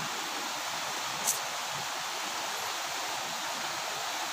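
Shallow stream water rushing over rocks in a steady hiss, with one brief tick about a second in.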